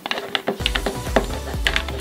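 Orange plastic spoon stirring thick white glue and pink colouring in a clear plastic bowl: a run of quick, irregular sticky clicks and taps from the spoon and glue against the plastic. Music plays underneath.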